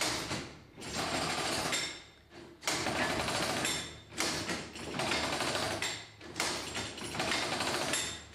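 An old rotary cartridge-making machine turned by its handwheel, its metal levers and plungers clattering. The clatter comes in about six bursts, each a second or so long, with short gaps between as the machine cycles.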